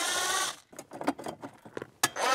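Cordless drill/driver running briefly to back out a Phillips screw, a short motor whine for about half a second, followed by a few light clicks.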